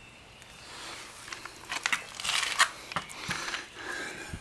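Rustling and crackling handling noise from moving around close to the microphone in grass and dry leaves, with a few sharp clicks, louder in the second half.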